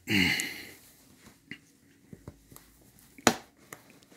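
Vinyl mast support loop being pulled hard down over a bamboo kite frame's cross support: a few small ticks, then one sharp snap about three seconds in as the fitting falls into place.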